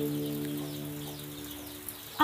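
Soft instrumental background music: a sustained chord of several held notes slowly fading, its lowest note stopping about one and a half seconds in. Faint high bird chirps sound above it.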